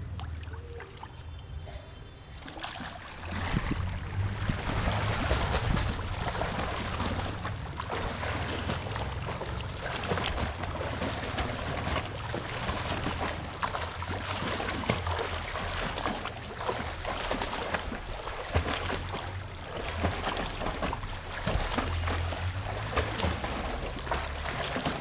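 Swimmer's kicks and arm strokes splashing in a pool during a single-arm freestyle drill: a steady wash of splashing that starts about two and a half seconds in, with a low rumble underneath.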